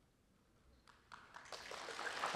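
Near silence, then a few scattered claps about a second in that swell into applause from the audience near the end.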